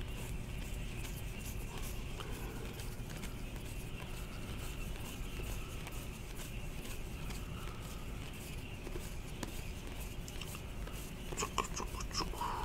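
Quiet room tone with a steady hum, over which a stack of trading cards rustles faintly as they are slid one behind another in the hands; a few light clicks of card edges come near the end.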